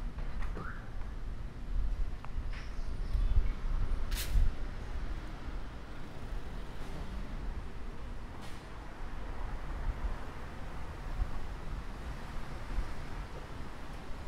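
Wind buffeting the microphone in gusts, heavier in the first half, over street traffic. A brief sharp hiss about four seconds in, and a fainter one later.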